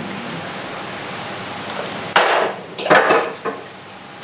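Kitchen tap running into a sink, then several loud clatters of dishes being handled, the loudest about two seconds in and again nearly a second later.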